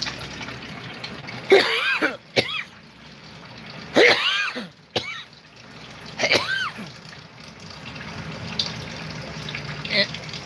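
A man coughs harshly three times, about one and a half, four and six seconds in, over a steady trickle of water running from a reverse-osmosis faucet into a plastic bucket.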